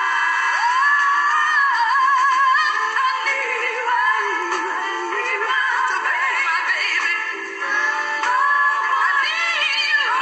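A recorded song with a woman singing, her held notes wavering in a strong vibrato, played back through small laptop speakers and sounding thin, with almost no bass.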